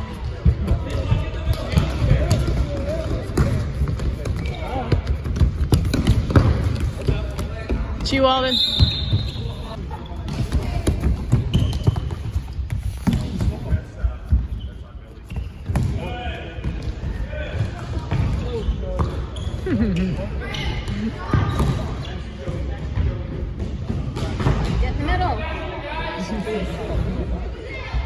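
A soccer ball being kicked and bouncing on a hardwood gym floor, with repeated thuds throughout, over the steady talk of spectators. There is a short squeak about eight seconds in.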